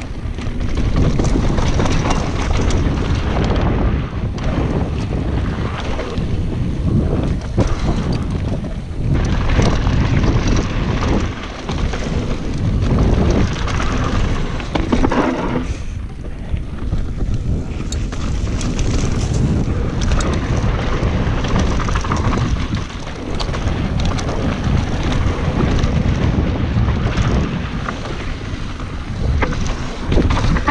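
Mountain bike descending a dry, rocky dirt singletrack at speed: wind buffeting the camera's microphone over the rumble of tyres on dirt, with frequent knocks and rattles from the bike as it hits bumps.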